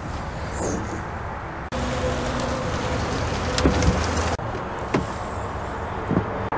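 Motor vehicle noise: a steady low hum under a broad noisy background, which changes abruptly twice, with a few faint clicks.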